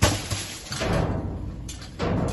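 A sharp thump at the start, then rustling and shifting of trash as a metal pole rummages through plastic wrap, cardboard and foam in a dumpster.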